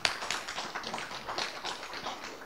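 Audience applauding, a steady stream of many hand claps, fairly quiet.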